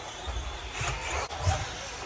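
Tamiya TT-02 radio-controlled electric touring car driving across a carpet track, its motor and drivetrain whirring as it passes. A few dull low thumps are heard, the loudest about one and a half seconds in.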